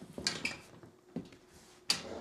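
Metal ironing board frame clanking and rattling as it is flipped over: a cluster of knocks with a brief metallic ring about a quarter second in, a single knock just past one second, and a sharp clank near the end.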